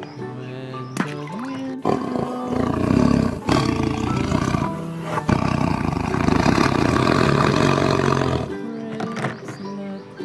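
Tiger roaring and growling in a run of long, rough roars from about two seconds in until shortly before the end, laid over steady background music.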